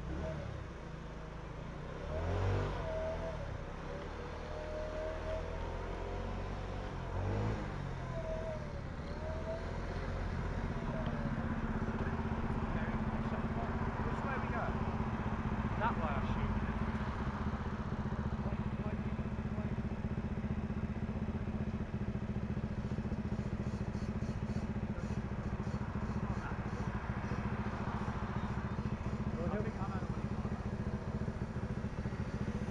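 Motor scooter engine running steadily, with a low hum that settles and holds even from about ten seconds in; indistinct voices in the first part.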